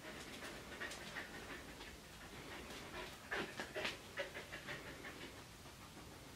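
Finnish Spitz dog panting and sniffing, faint and irregular, with a cluster of louder short sounds about three and a half seconds in.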